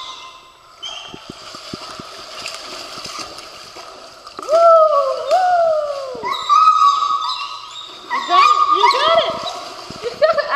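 Dog whining in a run of loud, high cries that rise and then fall in pitch, starting about halfway in, with one longer held whine and then a few short rising ones near the end. These are the nervous vocal cries of a first-time swimmer, over splashing water as the dog moves through the shallows.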